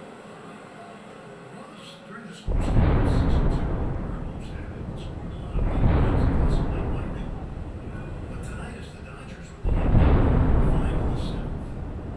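Three thunder sound-effect booms about three to four seconds apart, each starting suddenly and fading away over a few seconds.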